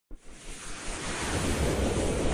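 Intro logo sound effect: a rushing whoosh with a low rumble that starts just after the opening and swells steadily louder.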